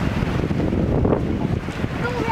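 Wind buffeting the camera microphone: a loud, uneven low rumble.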